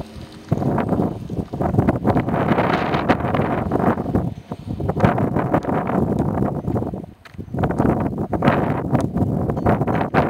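Wind buffeting the camera microphone in uneven gusts, with footsteps on asphalt beneath it.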